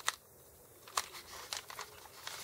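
Paper and cardstock strips being handled on a work table: a sharp tap at the start, another about a second in, and a few softer handling sounds near the end.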